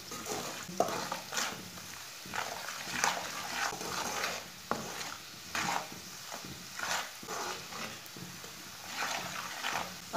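Metal spoon stirring and scraping spices frying in oil in an aluminium pot, with a stroke about every second over a low sizzle. The masala of chilli powder, turmeric and green garlic is being roasted on low heat.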